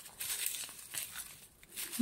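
Dry, papery onion tops and bulb skins rustling and crinkling under a hand: a scatter of short crackles that fade out after about a second and a half.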